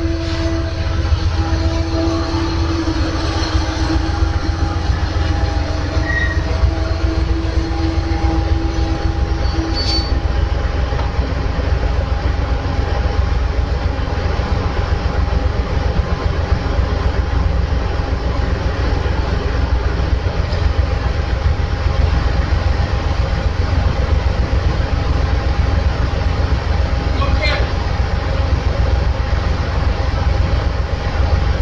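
Amtrak Superliner passenger train rolling slowly through a station and coming to a stop, with a loud, steady low rumble throughout. A low whine runs under it as the cars move and fades out about ten seconds in.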